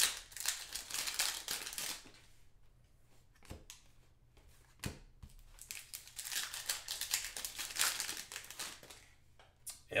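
Plastic wrapper of a trading-card cello pack being torn open and crinkled by hand, in two spells of crinkling with a quieter stretch between that holds a couple of soft clicks.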